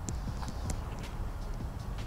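Footsteps walking, with a few light clicks and taps.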